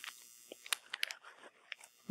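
A few faint, sharp taps of a stylus on an iPad's glass screen, the clearest about a second in, over quiet room hiss.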